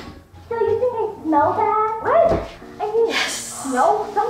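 A girl's high-pitched, wordless excited squeals, the pitch sliding up and down, with a breathy squeal near the end.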